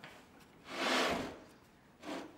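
A heavy lithographic limestone slab being pushed across a wooden board into its wooden storage shelf: one scraping slide about a second long, loudest near the middle.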